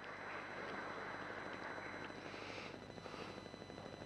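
Light audience applause in a large hall: many hands clapping in a steady patter that eases slightly near the end.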